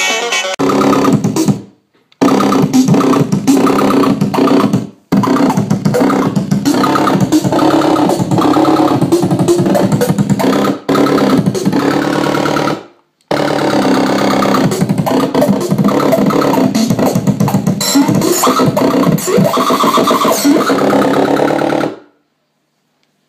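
Circuit-bent electronic toys making glitchy, stuttering electronic tones over a steady low drone. The sound drops out briefly three times and cuts off abruptly at the end.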